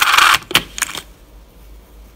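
Loose metal coins clinking and sliding against each other in a small cardboard box as they are picked through by hand: a loud jingling burst at the start, then a couple of single clicks within the first second.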